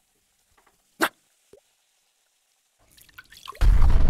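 Animated-intro sound effects: a single water-drip plink about a second in, a fainter one half a second later, then a short rising rush near the end that breaks into a loud, deep hit with a lingering low rumble.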